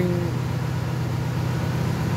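Truck-mounted borehole drilling rig's engine running steadily, a continuous low hum.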